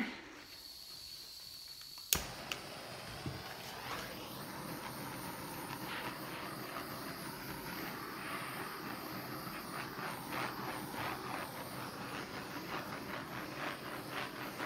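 A handheld gas torch is lit with a sharp click about two seconds in, then the flame runs with a steady hiss. It is being swept over wet epoxy resin to pop the surface bubbles and warm the resin so it flows.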